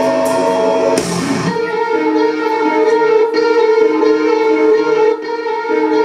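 Live metalcore band playing loud: about a second in, after a crash, the drums and low end drop out and an electric guitar rings on with held, sustained chords.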